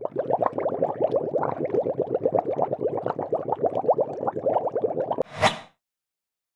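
Foaming bubble sheet mask crackling and squishing as it is pressed against the skin, a dense run of rapid tiny pops. It ends with a short swish about five seconds in as the mask is peeled off the face.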